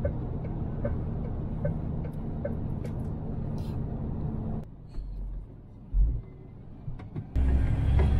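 Lorry driving on a motorway: a steady low drone of engine and road noise. About halfway through it drops away, with two short low thumps, then a louder drone returns near the end.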